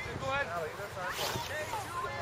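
Distant voices of players and spectators calling out across an outdoor soccer field, several shouts overlapping but no clear words, over steady outdoor background noise.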